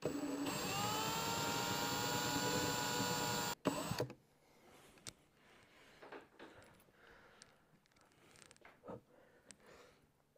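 Milwaukee M18 cordless drill boring out a screw that will not unscrew: the motor's whine rises as it spins up, holds steady for about three and a half seconds, then stops suddenly. After that only faint small clicks and handling sounds.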